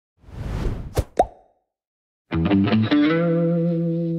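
Logo-intro sound effects: a whooshing swell topped by two sharp pops about a second in, then after a short silence a distorted guitar plays a few quick notes and settles into a held chord.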